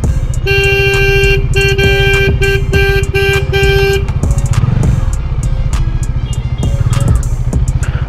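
A vehicle horn honks in a crowded street: one long blast, then about five shorter beeps in quick succession. Under it runs the low, steady throb of a Kawasaki Z900's inline-four engine at low speed.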